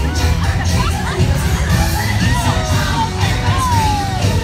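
Parade music with a heavy bass beat, with the crowd of spectators cheering and calling out over it in short rising and falling shouts.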